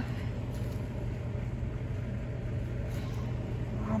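A steady low rumble with a constant hum, even throughout and without distinct events, of the kind PANN files as vehicle noise.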